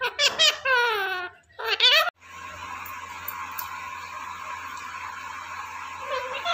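Talking pet parakeet making high-pitched, sliding vocal sounds in three quick bursts over the first two seconds. After that only a steady background hiss with a faint hum remains.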